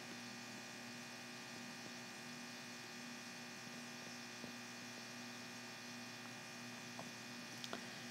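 Faint, steady electrical hum, with a clear low tone and fainter tones above it, and a few tiny ticks near the end.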